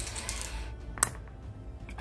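Two six-sided dice rolled into a fabric-lined dice tray, with one sharp click about a second in, over faint background music.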